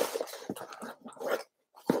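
Tissue paper rustling and crinkling as it is handled in a cardboard box, in soft, irregular bursts.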